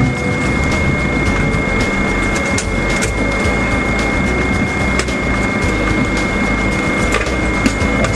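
Steady cockpit noise of a twin-engine airliner taxiing slowly at idle power: a constant high whine over a dense low rumble, with a few faint clicks.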